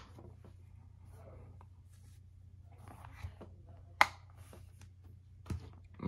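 Quiet room with a steady low hum, a few faint handling noises, and one sharp click about four seconds in, then a smaller one, as the wireless charger's cable and plug are handled and plugged in.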